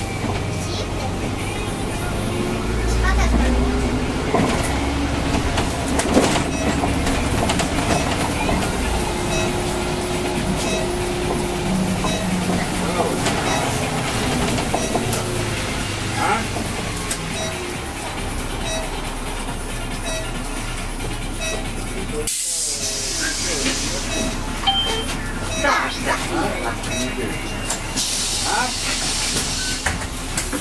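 Inside a moving city bus: the drivetrain's whine rises and falls as the bus speeds up and slows, over a constant rumble of motor and road. Past the middle come two bursts of compressed-air hiss from the bus's air system.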